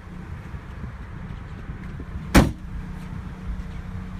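The trunk lid of a 2015 Dodge Dart slammed shut once, a single sharp thud about two and a half seconds in, over a steady low hum.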